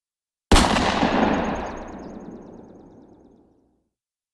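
A single loud blast sound effect, like a gunshot or cannon explosion, that hits suddenly about half a second in and dies away over about three seconds into a low rumble, with a faint crackle in its tail.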